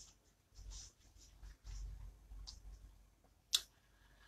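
Faint clicks and soft rustles, with one sharper click about three and a half seconds in.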